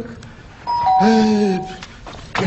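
Two-tone ding-dong doorbell: a higher chime and then a lower one a moment later, both ringing on for about a second. A short voice sound is heard over the chimes.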